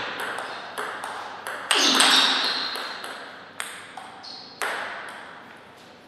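Table tennis ball in a rally, clicking off the bats and the table: about ten sharp hits at an uneven pace, each with a short echo, stopping a little after five seconds as the point ends. About two seconds in there is a louder, longer sound.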